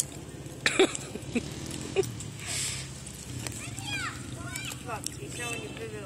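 A four-wheeler (ATV) engine running steadily at a distance, a low hum under faint voices.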